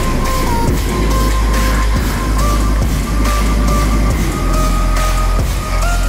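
Background music with heavy bass, a steady beat and a stepping melody line.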